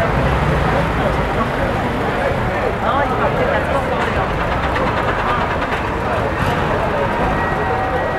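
Military vehicles driving past in a parade, their engines making a steady low rumble, with people's voices over it.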